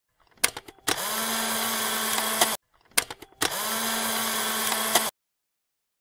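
A small motor whirring, likely an added sound effect: a few clicks, then a steady whir with a low hum for under two seconds, played twice the same way.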